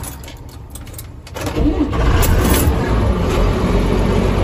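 JCB Fastrac 3185 tractor's diesel engine starting: it catches promptly about a second and a half in and settles straight into a steady run.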